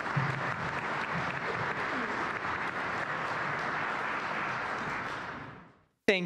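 Audience applauding steadily, fading out near the end.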